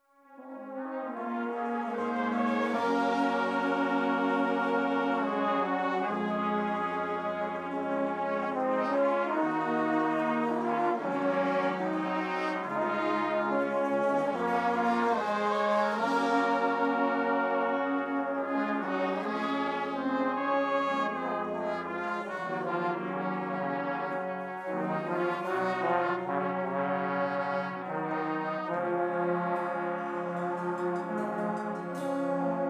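Brass band of trumpets, trombones and tubas, with clarinets, playing a piece under a conductor. It enters right at the start and moves through sustained full chords over a moving bass line.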